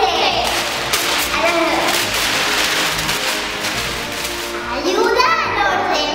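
Newspaper pages rustling and being crumpled by hands, a dense crackling paper noise that lasts about five seconds, with a child's voice coming in near the end.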